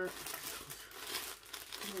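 Clear plastic packaging bag crinkling and rustling as it is handled, a dense run of small crackles.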